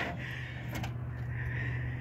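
Wrecked GMC pickup truck's engine idling with a steady low hum, and a faint click about three-quarters of a second in.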